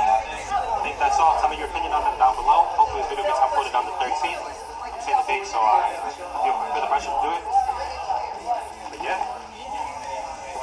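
Really loud background conversation of other diners, several voices talking at once, with music faintly under it, picked up by a camcorder's built-in microphone.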